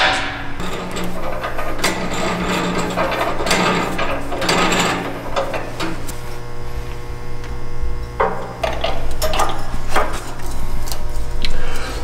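A wall-mounted coil spring compressor being cranked down on a Ford F-150 front strut, compressing its coil spring. There are repeated metallic clicks and knocks from the mechanism over a steady low hum.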